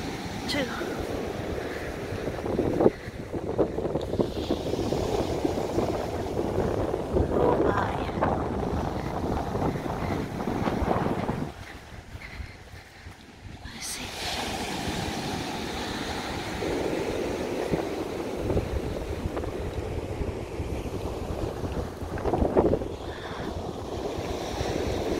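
Strong wind buffeting the microphone in gusts, over the sound of surf breaking on the beach. The wind drops away for a couple of seconds about halfway through.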